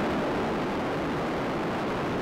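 Space shuttle Discovery's two solid rocket boosters and three main engines firing about eight seconds after liftoff, as the stack climbs off the pad. It is a steady, even rocket rumble with no distinct beats or tones.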